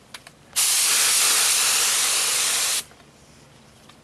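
HVLP spray gun spraying acetone: after two faint clicks, one steady hiss of air and atomized solvent starts about half a second in, runs a little over two seconds and cuts off sharply.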